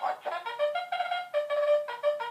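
1999 trumpet-playing Cookie Monster plush toy sounding a tune through its built-in speaker, set off by its toy trumpet held to its mouth. The tune comes in a trumpet-like electronic tone as a quick run of short notes.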